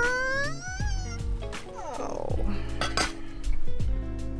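Background music with a drawn-out rising vocal sound at the start, then a few sharp clinks of a metal pan lid and pan.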